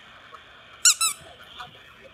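A squeaky plush dog toy squeezed twice, giving two short, high squeaks about a fifth of a second apart, each dropping slightly in pitch. They sound over the steady hiss of an open phone line.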